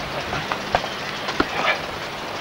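Steady hiss and hum of an old camcorder sound track recorded outdoors, with a few sharp knocks and a brief man's voice.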